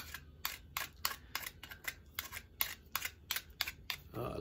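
A run of small, sharp clicks and taps, unevenly spaced at about four a second, from a knife, tools and a tulsi twig being handled at close range.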